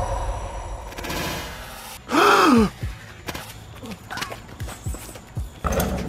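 A music beat fading out, then about two seconds in a loud, short vocal cry whose pitch rises and falls. After it come irregular thumps of a basketball bouncing on a concrete court.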